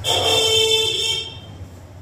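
A vehicle horn sounding once, a steady honk of about a second that stops abruptly.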